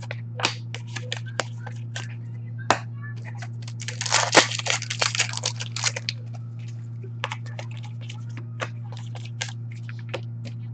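Trading cards handled and sorted by hand: short clicks and taps as cards are snapped together and set down on a glass counter, with a dense flurry of card rustling from about four to six seconds in. A steady low hum runs underneath.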